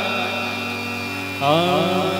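A harmonium holds a steady chord. About one and a half seconds in, a male voice comes back in over it, singing a devotional bhajan melody with a wavering, ornamented pitch.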